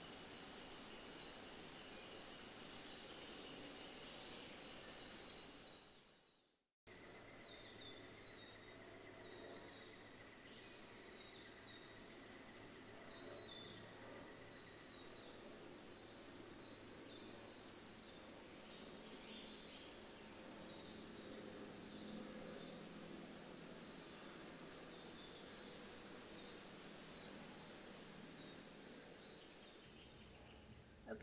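Many small birds chirping faintly and almost without pause over a low steady hum. The sound cuts out completely for about half a second around six seconds in.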